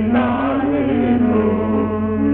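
Devotional bhajan music: a melody line with wavering, sliding ornaments over a steady held drone.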